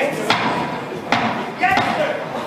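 Boxing-glove punches landing: two sharp thwacks, about a third of a second and just over a second in, over shouting and chatter from the crowd.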